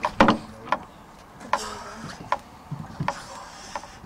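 A series of light knocks or taps, about one every second, over a low steady background, with a sharper, louder knock just after the start.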